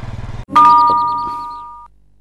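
A motorcycle engine runs for the first half second and cuts off suddenly. A loud bell-like chime follows, two steady tones sounding together, dying away for about a second and a half before stopping abruptly.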